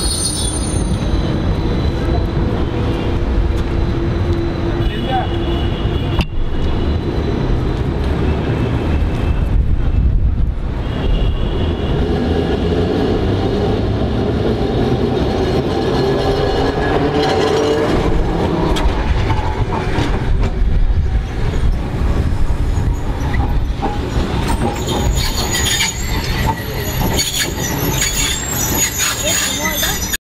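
Alexandria Ramleh-line electric tram moving off and rolling past close by: a steady low rumble, with the motor's whine rising in pitch partway through and high wheel squeal near the end.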